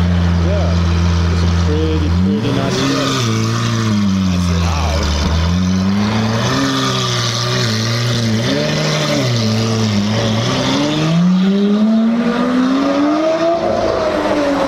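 Lamborghini Aventador S Roadster's V12 idling steadily, then pulling away about two seconds in. Its pitch rises and falls through several gear changes, then climbs in one long rise near the end.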